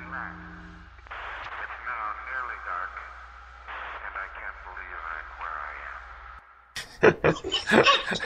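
A voice speaking with a thin, radio-like tone over a steady low hum, which cuts off abruptly about six and a half seconds in; then loud laughter breaks out near the end.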